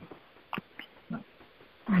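A pause in telephone conference-call speech. The line is quiet apart from a few faint short clicks and a brief faint pitched sound about a second in.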